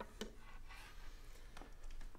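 A few faint clicks and light rustles as a hand moves the insulated wire and compass on a wooden table, over a faint steady room hum.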